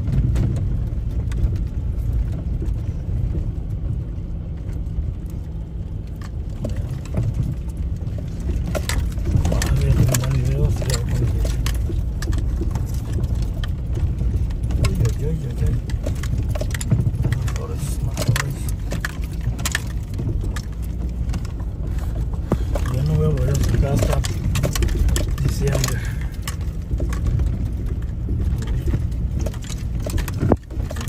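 Car driving slowly over a rough, rocky dirt road, heard from inside the cabin: a steady low rumble of engine and tyres, with frequent knocks and rattles as the wheels hit stones and ruts, busier from about eight seconds in.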